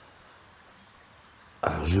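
A small bird chirps faintly outdoors, giving short high notes about twice a second over a quiet background. A man starts talking near the end.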